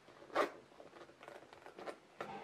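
Zipper of a small quilted leather pouch being pulled shut: one quick zip about half a second in, followed by a few faint clicks as the pouch is handled.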